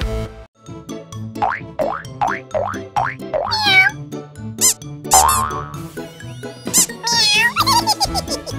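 Bouncy children's cartoon background music with cartoon sound effects over it. A run of five quick falling whistle-like glides, about half a second apart, starts a second and a half in. More wavering, sliding effects follow through the rest.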